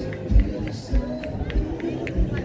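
Pop-jazz band music with a steady kick-drum beat about every 0.6 seconds, under held instrument tones and short, crisp cymbal or snare strokes.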